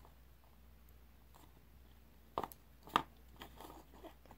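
Wooden craft sticks being handled and pressed together by hand: after a quiet stretch, two light clicks about half a second apart, then faint rustling of the sticks on wax paper.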